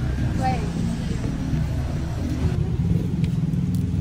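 Steady low outdoor rumble, the kind made by nearby road traffic, with a single spoken word near the start.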